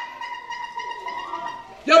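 Squeeze whistle in a clown prop sounding one steady, fairly high tone for nearly two seconds before a voice cuts in.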